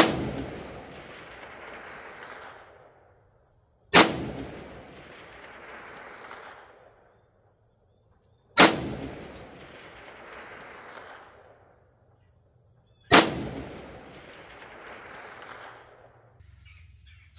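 Four rifle shots, about four to four and a half seconds apart, each followed by a long rolling echo that fades over about three seconds.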